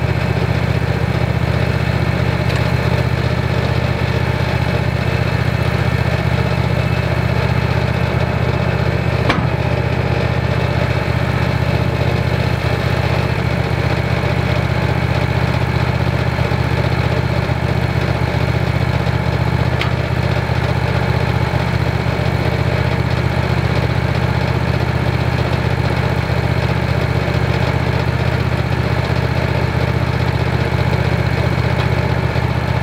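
Wood-Mizer LX150 bandsawmill's engine running steadily at an even speed, with a couple of faint clicks.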